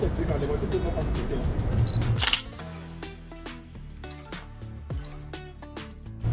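Street noise with voices, then about two seconds in a single camera shutter click. The street sound drops out after it and background music plays.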